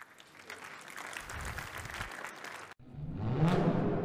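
Audience applause, which cuts off abruptly a little before the three-second mark. It is followed by a short musical logo sting with a rising sweep.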